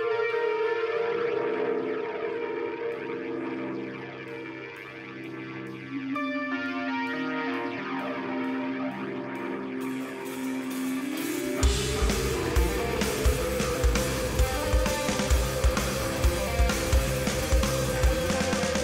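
Live progressive rock: held synthesizer and guitar tones without drums, then about eleven and a half seconds in a rising glide leads into the full band, with drums and bass coming in on steady heavy hits.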